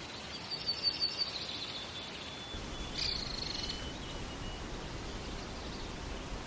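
Birds chirping: a quick run of high notes about half a second in and another high call about three seconds in, over a steady hiss of outdoor ambience.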